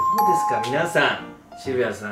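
A two-note doorbell-style chime sound effect, a higher note then a lower one, ringing for about a second at the start, over voices and background music.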